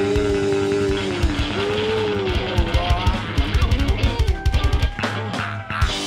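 Punk rock band playing live: held vocal notes over electric guitars and drums, then a fast run of drum hits about three seconds in that closes the song, the drums stopping a second before the end and the chord left ringing under a few last crashes.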